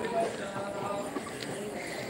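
Footsteps of people climbing concrete stairs, a run of soft knocks, with people talking in the background.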